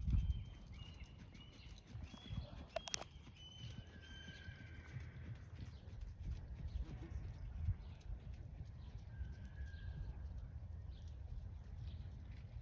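A pony trotting on a sand arena, its hoofbeats soft and muffled under a steady low rumble. A few short high-pitched calls sound in the first seconds, and a sharp click comes about three seconds in.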